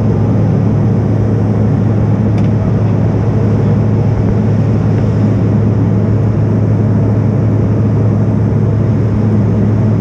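Steady cabin noise of a regional jet airliner in flight: engine and airflow noise from a window seat, with a strong low hum.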